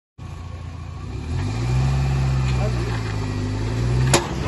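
The engines of a John Deere 5310 tractor and a Mahindra Thar 4x4 straining under load against each other on a tow chain. The engine note rises about a second and a half in, then holds steady at the higher pitch.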